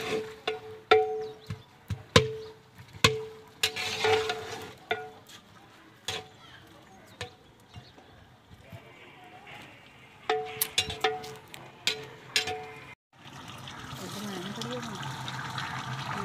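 A long metal stirrer knocking against the rim and sides of a large metal cooking pot (degh) as the stew is stirred. Each knock rings briefly at the same pitch, about once a second, in two runs. Near the end a steady hiss follows from the simmering pot.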